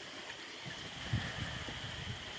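Steady rain falling, an even hiss, with a few low thumps from about halfway through.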